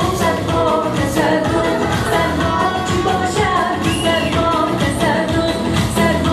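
Woman singing a pop song into a microphone over amplified instrumental backing with a beat.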